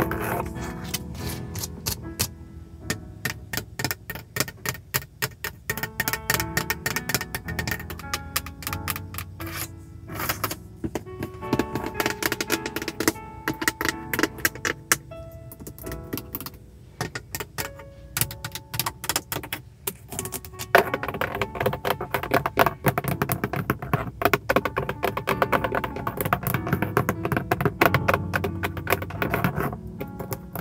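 Long fingernails tapping rapidly on the plastic surfaces of a Hyundai Tiburon's interior: the steering wheel's airbag cover and the centre console by the gear shifter. Soft spa music plays underneath.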